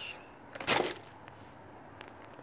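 A short crinkling rustle of stiff plastic packaging about half a second in, as a packaged set of brake lines is set down into a cardboard box.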